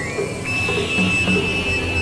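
Experimental electronic synthesizer music: a steady high-pitched tone enters about half a second in and holds over a low drone with a repeating pulse.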